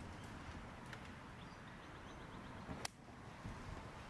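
A golf iron strikes the ball once with a sharp click about three seconds in. Faint bird chirps can be heard earlier.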